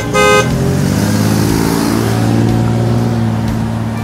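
Horns sounding among a mass of cyclists: a short, high toot at the start, then one long, low horn note held for about three seconds.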